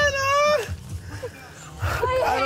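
A person's high-pitched, held cry lasting a little over half a second at the start, steady in pitch, like a drawn-out squeal of fright.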